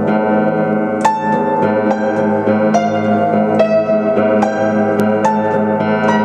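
A Russian upright piano being played slowly, unaccompanied. Low bass notes are held throughout, while single higher notes are struck about every half second to a second and left to ring together.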